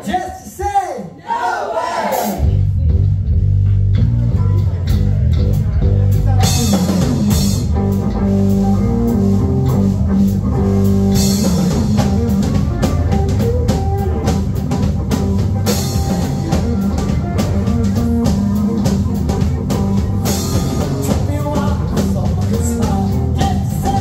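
Live rock band with electric guitar, electric bass and drum kit kicking in about two seconds in and playing a steady groove. A voice on the microphone is heard just before the band starts.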